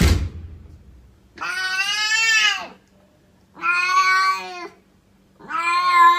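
A house cat meowing three times in long, drawn-out calls, each over a second long, the last running on past the end. A brief sharp thump comes right at the start.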